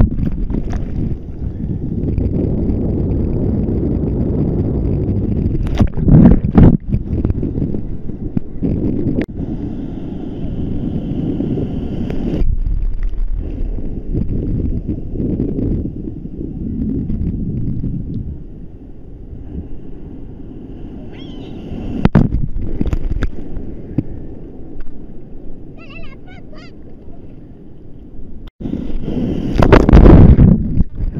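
Sea surf and water sloshing around a handheld camera at the waterline, a steady low rumbling wash with wind buffeting the microphone. A few sudden loud splashes break through, the loudest about six seconds in and again near the end.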